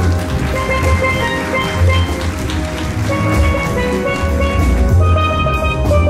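Steel drum band playing: steel pans ringing out a melody and chords over a deep bass line from the bass pans, with drums keeping the groove.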